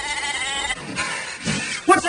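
A sheep bleating: one short wavering call at the start, followed by a brief rising sound near the end.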